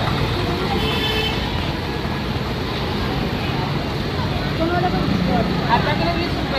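Busy street-market background: a steady rumble of road traffic and engines, with scattered voices of people nearby, louder toward the end.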